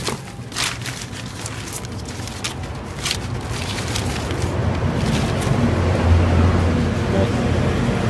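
A few sharp rustles and clicks of dragon fruit cuttings and newspaper being handled, then a low engine hum that grows steadily louder over the last few seconds, like a motor vehicle drawing near.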